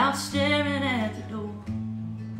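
Acoustic guitar strummed and picked, with its low E string tuned up to F, with a strum right at the start. About half a second in, a short wordless sung note bends downward over the ringing chords.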